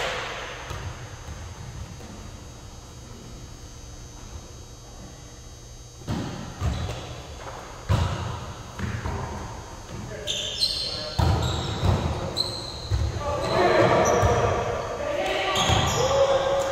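Volleyball play in a gymnasium: after a quiet opening stretch, sharp smacks of hands hitting the ball start about six seconds in and come every second or two, echoing in the hall. Players' calls and chatter rise toward the end.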